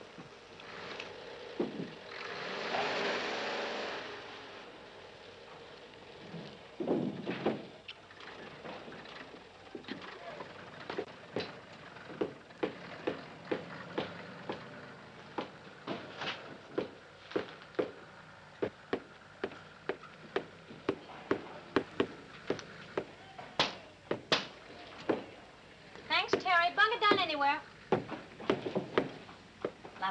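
Footsteps, roughly two a second, running for about a quarter of a minute. There is a short burst of hiss about two seconds in, and a brief voice near the end.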